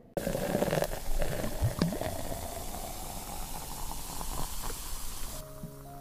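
Liquid sound effect: a steady fizzing hiss with bubbling that starts suddenly and cuts off about five seconds in. A held chord of music follows near the end.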